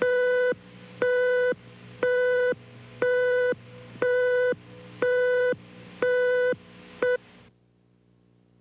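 Countdown leader beeps on a TV station's countdown card: a steady mid-pitched beep once a second, each about half a second long. They stop about seven seconds in, the last beep cut short.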